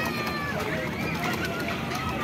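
Children's voices calling and shouting in short high-pitched cries that rise and fall, over a background of crowd chatter.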